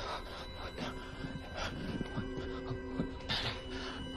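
Horror film score: a steady drone of held tones over a low rumble, with short hissing bursts and wavering low sounds scattered through it, the strongest burst near the end.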